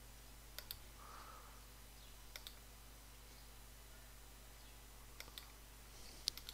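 A computer mouse clicking three times in quick double clicks, about a second in, around two and a half seconds and again near the end, over near-silent room tone with a faint low hum.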